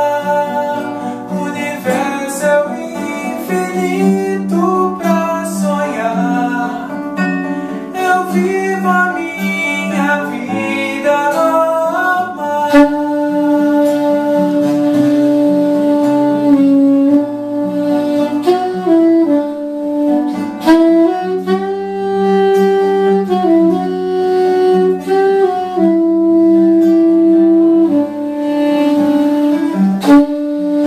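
Classical guitar fingerpicked alone for about the first twelve seconds. Then a soprano saxophone comes in with a melody of long held notes over the guitar.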